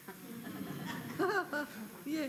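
Laughter, with a short voiced laugh that rises and falls in pitch a little past the middle.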